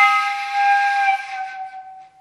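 Shakuhachi sounding one long held note with a lot of breath in the tone, strong at first and fading away near the end.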